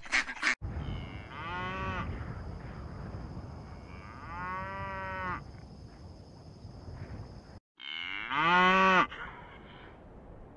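Cows mooing: two long moos, then after a brief break a third, louder moo near the end. The very start holds a few quick goose honks that cut off abruptly.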